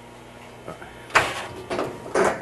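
Brief scraping rustle about a second in, with a couple of smaller ones near the end, as the blast cabinet's soft whip hose is pulled out through the open door.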